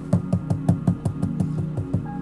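Rapid, even knocking: about ten knocks at roughly five a second.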